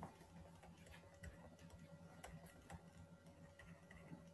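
Near silence with faint, irregular ticks of a stylus tapping and writing on a pen tablet, over a low steady hum.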